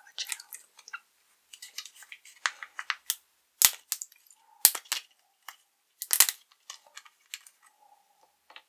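Plastic squeeze pouch of Warheads Super Sour Gel being handled and its screw cap twisted open: plastic crinkling and small crackles, with three sharp clicks a second or so apart.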